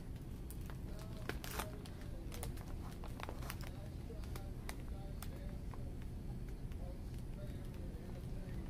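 Shop ambience: a low steady hum with scattered light clicks and crinkling from handling as she browses the shelves.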